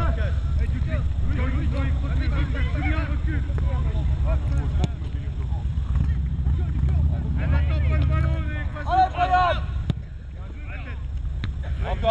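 Wind rumbling on the microphone, with distant shouting voices of players and spectators at a youth football match; the shouting is loudest about two-thirds of the way through.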